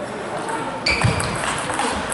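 Table tennis ball being served and struck in a rally: sharp clicks of the ball off the rackets and the table, the first about a second in and more near the end.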